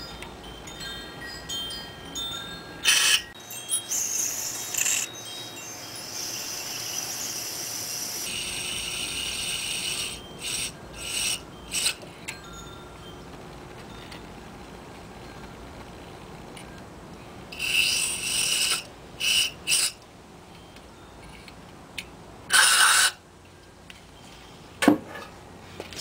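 Aerosol can spraying through its straw into a Volkswagen Beetle's carburettor in a string of short hissing bursts, with one longer spray in the first half and a loud burst near the end.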